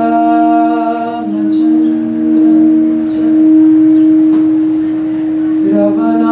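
Harmonium sounding a steady drone with a woman's voice holding long notes over it, the lower notes shifting a few times. The sound is a continuous, unbroken wash of held tones, used for a meditative sound bath.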